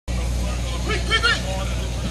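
A man's voice calling out twice, briefly, about a second in, over a steady low hum.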